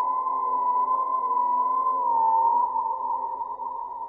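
Eerie electronic drone: one sustained tone held near a single pitch with a slight waver, over quieter low tones, growing a little fainter near the end.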